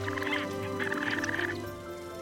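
A cartoon dragonfly-like creature's vocal sound effect: two short buzzing trills, the second longer and starting about a second in, over soft background music.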